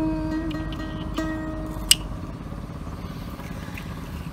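Acoustic guitar accompanying ca cổ singing, playing a few plucked notes between sung lines that ring and slowly fade. There is a sharp click about two seconds in.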